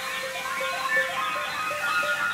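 Concert band playing a contemporary piece: a busy, overlapping texture of quick high notes with short pitch slides.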